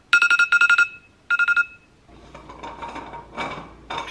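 iPhone alarm ringing: two bursts of rapid, high beeps that stop about two seconds in. After that a low hum and faint clatter in a kitchen.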